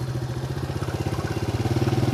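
Small motorbike engine running steadily at low speed, close by, getting a little louder near the end.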